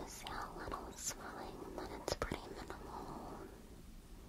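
A person whispering softly and close, with a few sharp clicks near the start and about two seconds in.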